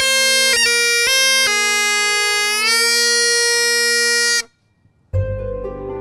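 Bagpipes playing a tune over steady drones, the melody broken by quick grace notes, stopping abruptly about four and a half seconds in. After half a second of silence, soft music with plucked, harp-like notes begins.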